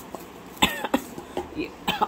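A person coughing about half a second in, followed by a few shorter, softer sounds.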